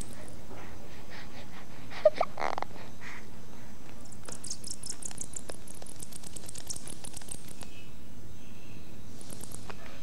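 Vampire bat sounds: a brief pitched squeak about two seconds in, then a fast run of thin, high clicks for a few seconds, over a steady low background.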